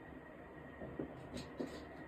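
Light handling sounds of hands working at a cutting mat: a tube and small leather pieces picked up and set down, giving several soft taps and scuffs from about a second in, over faint room hiss.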